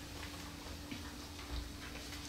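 Quiet room tone with a faint steady hum and a few soft ticks as sheets of paper are handled near the microphone.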